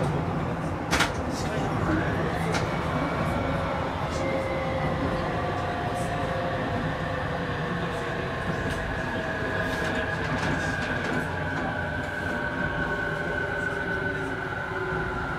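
Electric train running on rails, heard from inside the car: a steady rumble, with a motor whine that sets in about two seconds in and falls slowly in pitch as the train slows. A sharp click about a second in.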